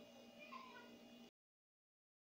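A faint, short, high gliding cry, like an animal's call, over a low steady hum. The audio cuts off to silence about 1.3 s in.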